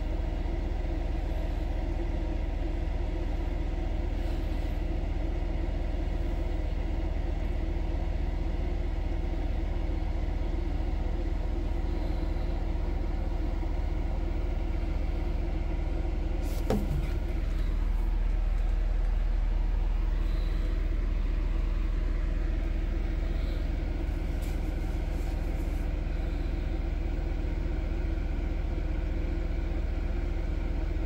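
A steady low mechanical drone, like a motor or engine running, with a brief falling whine about halfway through, after which the low rumble swells slightly for a few seconds.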